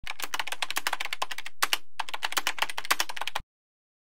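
Rapid typing on a computer keyboard: a quick run of keystrokes with two brief pauses, stopping short about three and a half seconds in.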